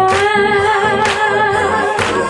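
Live gospel worship song: a singer slides up into one long held note over electronic keyboard accompaniment.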